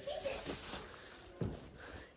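Faint rustling of a plastic shopping bag carried while walking, with a soft thump about one and a half seconds in.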